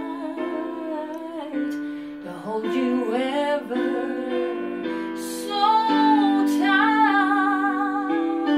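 A woman singing a slow ballad with vibrato over an instrumental backing track from a Bluetooth speaker, with a long held note in the second half.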